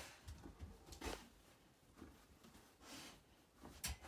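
Faint sounds of a dog moving at a window: a few short rustling sounds about a second in and around three seconds in, and one sharp tap just before the end.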